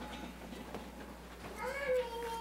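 A toddler's short, high-pitched vocal sound near the end, over low room noise.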